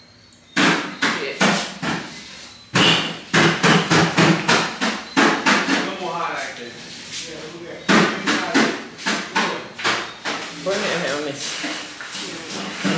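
A run of sharp knocks or slaps, several a second in irregular bursts, with people talking in between.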